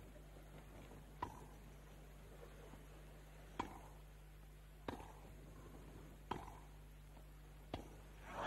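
Tennis ball struck back and forth by rackets in a rally on a grass court: five sharp hits, about one every second and a quarter, over a faint steady low hum.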